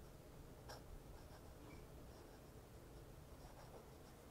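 Faint scratch of a Lamy Studio fountain pen nib gliding over paper as words are written, with one small tap about two-thirds of a second in.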